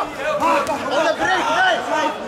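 Speech only: a man repeatedly shouting 'Stap!' (Dutch for 'step'), a coaching call to a fighter in the ring.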